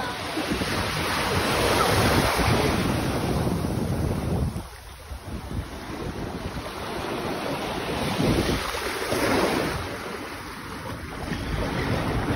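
Rushing wind and water noise, a broad haze that swells and eases, with a brief lull about five seconds in.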